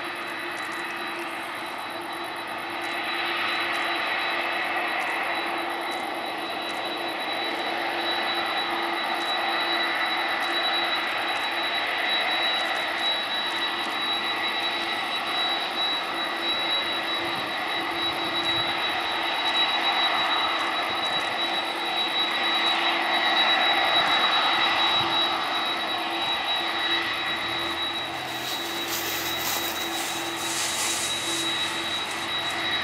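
McDonnell Douglas MD-11F freighter's three turbofan engines running at taxi power: a steady jet whine with high held tones, growing louder as the jet turns toward the microphone, then easing a little near the end.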